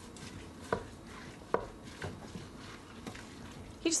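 Wooden spatula stirring thick lentil chili and greens in the inner pot of an electric pressure cooker, with a few sharp knocks of the spatula against the pot wall, the two loudest about a second in and about a second and a half in.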